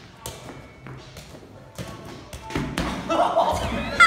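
A spikeball game: a string of sharp taps and thumps as the ball is hit and bounces off the net, then a louder scuffling crash near the end as a player dives onto the rubber floor and the net frame is knocked over.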